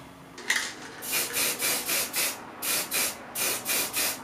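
Aerosol spray-paint can sprayed in quick short bursts, each a brief hiss, about three a second with a short pause midway.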